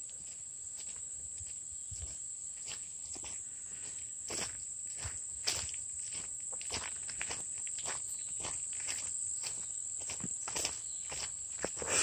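Footsteps walking steadily over grass and a dirt path, with a continuous high-pitched drone of insects behind them.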